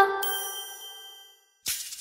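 The last chime of a cartoon children's-channel logo jingle ringing on and fading away over about a second and a half. Near the end a faint click is followed by a short rising swish.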